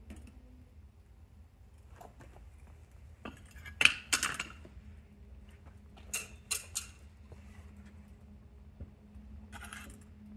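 Steel crucible tongs and a clay-graphite crucible clanking as they are set down after pouring aluminum: a loud metallic clatter about four seconds in, then three lighter clinks about two seconds later, and a short rattle near the end.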